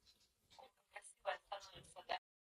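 A towel rustling under hands, in short scratchy bursts from about halfway through.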